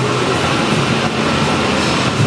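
Steady rushing background noise with a faint low hum.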